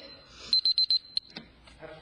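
Electronic timer beeping: a quick run of about five short, high beeps at one pitch about half a second in, followed by one more single beep.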